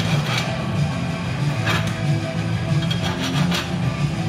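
Background music with a steady low, pulsing bass line, and a few brief hissy bursts over it.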